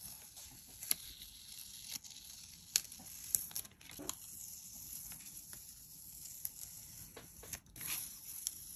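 Decorative washi tape being peeled off paper by hand: a quiet, papery rustle broken by a handful of sharp crackles as the tape lifts away.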